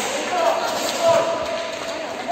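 Voices calling out across a large sports hall during a roller hockey game. Short knocks of sticks and ball come in among the calls.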